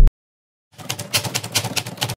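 A loud music sting cuts off at the very start. After a short silence comes a quick, irregular run of sharp keystroke clicks, about a dozen in a second and a half: a typing sound effect starting about three-quarters of a second in.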